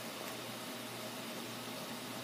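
Steady, even background hiss with a faint low hum: room tone between speech, with no distinct sound events.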